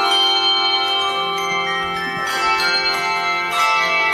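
A handbell choir ringing a carol: many overlapping, sustained bell tones, with new notes struck every second or so.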